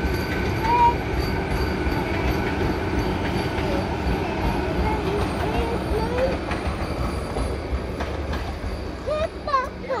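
Vande Bharat Express electric multiple-unit train passing close by: a steady rumble of wheels on rail that eases off near the end as the last coach goes by.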